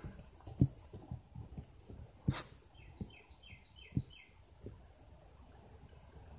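A run of five short, high animal chirps, each falling in pitch, about three a second, with a few soft knocks around them. The loudest knock comes about two seconds in.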